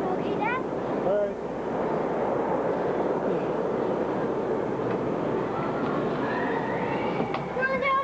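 Steady din of many children's voices and shouts in a busy indoor play area, with a few short high-pitched calls near the start and again near the end.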